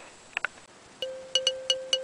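A short chiming music cue: after a near-quiet moment, a run of quick, high, bell-like notes plays over one held low note, starting about halfway through.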